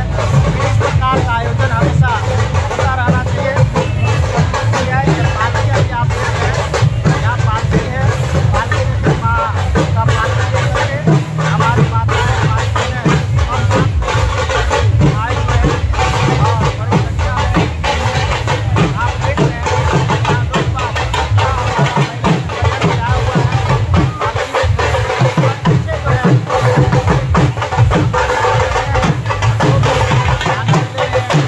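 Procession music: a double-headed barrel drum beaten in a continuous rhythm of dense strokes, with voices and crowd noise over it.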